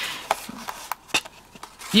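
Cardstock pop-up card rustling as it is lifted and opened by hand, with a few light clicks and taps from the stiff paper.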